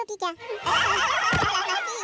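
Several high cartoon voices wailing together in a loud, tangled outcry, with a short low thud about a second and a half in.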